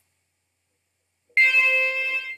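Silence, then about 1.4 s in a single synthesized note, C5, on Sonic Pi's zawa synth. It lasts about a second and stops pretty dead, with no echo or reverb effect applied.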